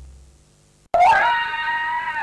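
A child's voice screaming: one long, high cry that starts suddenly about a second in, rises briefly and then holds steady. Before it, a music track fades out.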